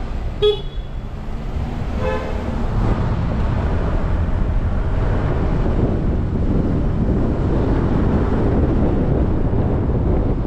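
Car horn toots: a short one about half a second in and a longer one about two seconds in. Then steady traffic and road noise that grows louder as the car gathers speed.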